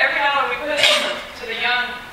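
A woman's voice talking over a PA in a hall, with one brief sharp high-pitched sound a little under a second in.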